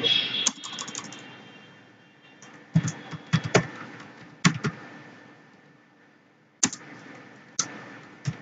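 Computer keyboard keys tapped in irregular clicks, some single and some in quick little runs, with pauses of a second or two between, as a password is typed.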